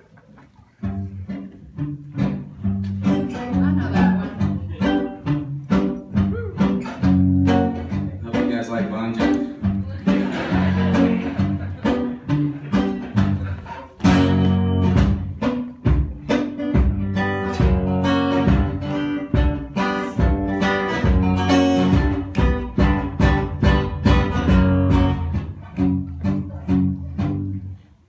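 Live acoustic guitar played in a steady, rhythmic picked and strummed pattern. It starts about a second in, grows louder about halfway through, and stops abruptly just before the end.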